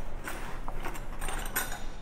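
Screwdrivers being handled and knocked together, with light irregular clicks and rattles.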